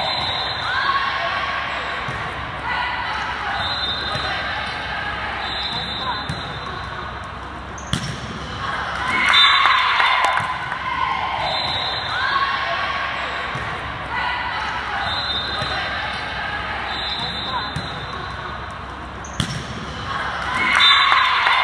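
Indoor gym during a volleyball match: indistinct voices of players and spectators echo through the hall, and the ball is struck with sharp knocks about eight seconds in and again just before the end.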